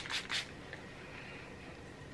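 Pump spray bottle of fragrance mist spritzed a few times in quick succession: short hissing puffs in the first half second, then faint room tone.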